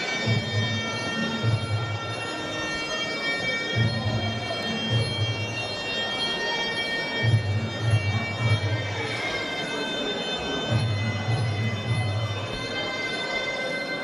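Traditional Muay Thai ring music: a sustained, nasal reed melody of the pi java oboe over a repeating pattern of low drum beats. The melody shifts to a new pitch about nine seconds in.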